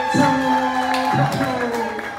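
Pre-recorded musical sound effect from an electronic sample pad: sustained pitched tones, fading towards the end, with a few short voice sounds from the people around it.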